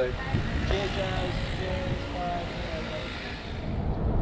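A van's engine running as a low, steady rumble, with indistinct voices over it.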